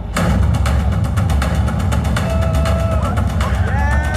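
Show soundtrack played over loudspeakers. It starts with a sudden deep boom, then a fast rhythmic pulsing over a heavy rumble, with wailing, sliding tones from about halfway through.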